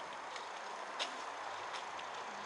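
Steady background noise with a few faint sharp clicks, the loudest about a second in.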